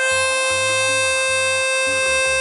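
Diatonic harmonica in B-flat, hole 4 drawn: one long, steady note, a C, held on the draw reed. The reed is in tune.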